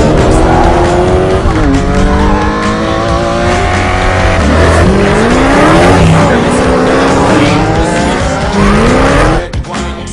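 Supercar engines accelerating hard, several at once, their pitch climbing and dropping back with each gear change. The sound falls away near the end.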